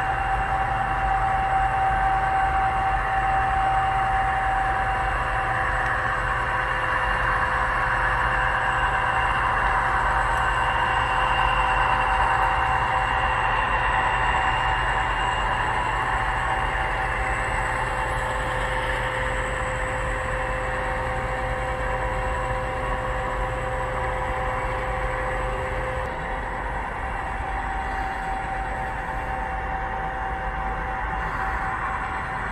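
Model freight train, led by four diesel locomotive models, running along the layout track with a steady rolling drone and faint steady tones. It grows louder toward the middle as the train passes, then eases off.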